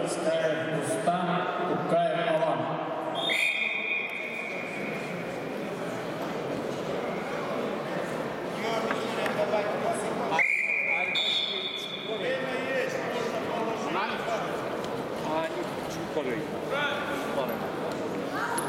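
Referee's whistle blown twice, each a high steady blast of about a second: once about three seconds in, halting the ground action, and again about ten seconds in as the wrestlers restart on their feet. Voices echo around the large hall throughout.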